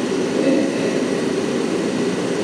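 A steady stream of liquid poured from a stainless steel kettle through a mesh strainer into a plastic jug, giving a continuous even pouring sound.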